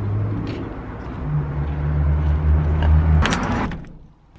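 Car engine running with a steady low hum that rises and grows louder about a second in. A short rattling rustle follows a little after three seconds, and the sound cuts off just before the end.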